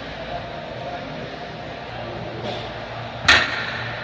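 One sharp metal clank about three seconds in, as the plate-loaded shrug machine's handles and weight plate are let down after the last held rep, with a short ring after it. Steady gym background hum throughout.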